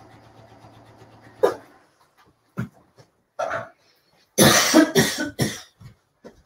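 Sewing machine stitching with a steady hum that stops about a second and a half in, followed by a person coughing several times, the loudest coughs about four and a half seconds in.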